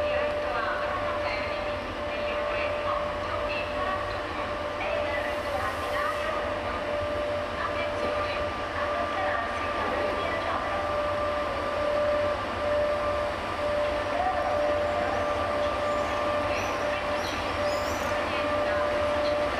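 FS Class E.464 electric locomotive hauling double-deck coaches slowly into a station. A steady electric whine is held over the low rumble of the train.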